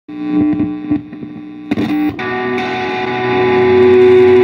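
Electric guitar through effects: a few plucked notes, then a chord held and sustained, as the band warms up before the count-in.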